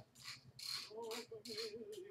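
Tony Little Gazelle glider in use, its swinging arms and pivots swishing and creaking with each stride in an uneven rhythm of about two to three strokes a second, with a faint wavering tone in the second half.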